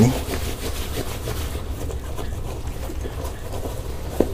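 Hand scrubbing wet, soapy black trouser fabric with quick back-and-forth strokes, working a wall-paint stain loose. The scrubbing is busiest in the first second or so, then eases off.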